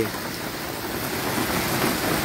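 Steady rain falling, an even hiss.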